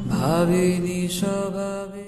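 A voice singing a chant-like melody, sliding up into long held notes over a steady drone.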